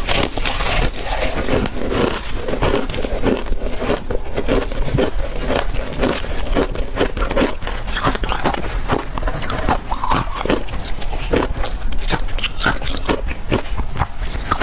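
Close-miked crunching and chewing of matcha-powder-coated ice, a dense run of irregular crisp crackles and crunches.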